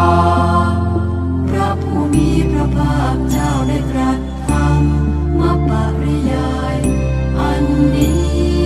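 Buddhist sutta chanting, a Pali line followed by its Thai translation, sung over a musical backing. Sustained low notes in the backing change about every two seconds.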